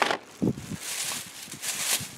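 A thin plastic shopping bag rustling and crinkling as it is handled and pulled open, after a couple of soft knocks of goods being set into a plastic tote near the start.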